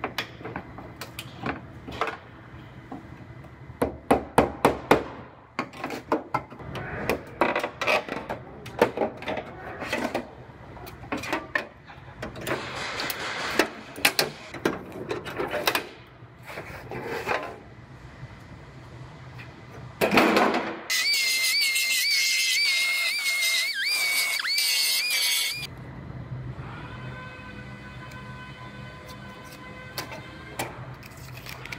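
Hammer striking a chisel driven along the sheet-metal seam of a car's quarter panel, in irregular clusters of sharp metallic taps for the first half, separating the old panel. About two-thirds of the way in, a power tool runs loudly for about four seconds with a high, wavering whine, then stops.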